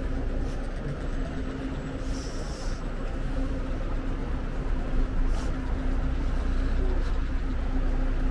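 City street background: a steady rumble of traffic with a constant low hum running under it.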